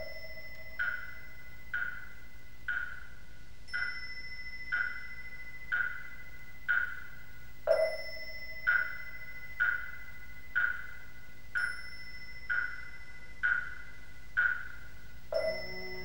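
Slow, even percussion with a pitched knock about once a second and a deeper, ringing stroke every fourth beat, over a faint steady high tone.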